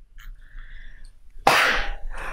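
A person sneezing once, loudly and suddenly, about one and a half seconds in.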